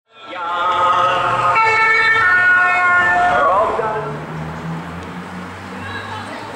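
A loud wailing siren tone that steps up in pitch about one and a half seconds in, then glides down and fades near the middle, leaving a low background murmur.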